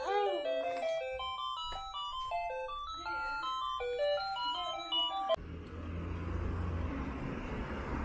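A baby activity walker's electronic toy playing a simple beeping tune, one note after another. About five seconds in, it cuts off abruptly and a steady low rumble and hiss takes over.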